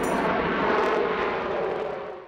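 Twin Pratt & Whitney F119 turbofan engines of an F-22 Raptor running on takeoff: a steady jet noise that starts to fade near the end. Music stops shortly after the start.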